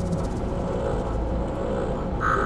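Steady low rumble of a car's interior.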